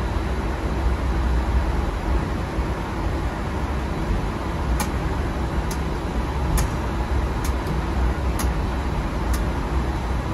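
Steady low rumble of an airliner's flight deck while it taxis after landing. In the second half, a run of about seven short sharp clicks as switches on the overhead panel are flipped.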